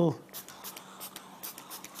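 Several short, faint hisses from a hand-held water atomizer spritzing drops of water onto wet acrylic paint.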